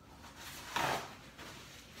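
A paper towel torn off a roll: one short ripping rustle about three quarters of a second in.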